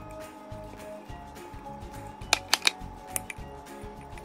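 Background music, with a spatula stirring sourdough starter in a glass mason jar: three sharp clicks of the spatula against the glass a little past halfway, then a fainter one.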